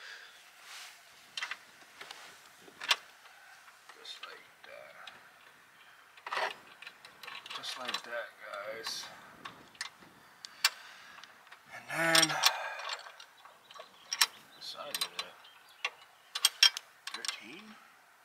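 Small, scattered metal clicks and taps of a nut, bolt and wrench being handled while a locking nut is fitted behind a hood strut's mounting stud.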